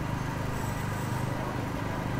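A heavy engine running steadily in city street noise: a low rumble with a fast, even pulse.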